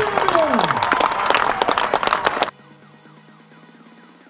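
A crowd clapping and cheering, with shouting voices, cut off abruptly about two and a half seconds in. It gives way to quiet electronic background music with a steady repeating beat.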